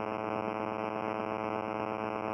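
Steady buzzing hum with no change in level, the recording's background noise heard in a gap between spoken phrases.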